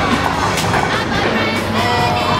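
Music over bowling-alley noise, with a bowling ball rumbling down a wooden lane and striking the pins with a clatter about half a second in.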